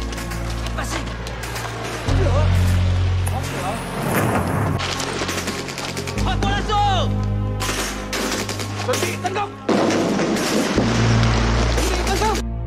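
Movie battle soundtrack: rapid rifle and machine-gun fire and men shouting, over a score of long, low sustained notes.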